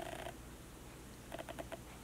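Faint, soft clicking in two short quick runs, one near the start and one a little over a second in, with only low room noise between them.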